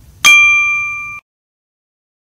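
A single bright ding sound effect: one bell-like strike about a quarter-second in, ringing with a clear tone that fades for about a second and then cuts off suddenly.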